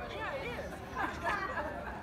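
Indistinct chatter of people talking nearby, with no words clear enough to make out.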